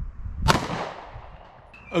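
A single 9mm pistol shot, fired from a PSA Dagger, about half a second in, its echo fading off over about a second.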